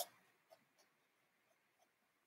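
A paintbrush dabbing acrylic paint onto a canvas: one louder dab at the start, then a few faint taps, otherwise near silence.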